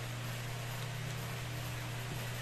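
Steady low hum and even hiss with no distinct events: background room tone. No page rustling stands out.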